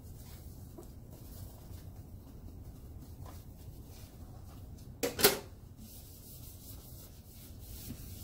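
A plastic lid set down onto a small stainless-steel ultrasonic cleaner: a sharp double clack about five seconds in, amid faint handling rustles and a low room hum.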